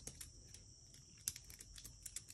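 Faint, irregular clicks of a dog's claws tapping on concrete as she steps and turns on her hind legs, over a steady high-pitched drone of insects.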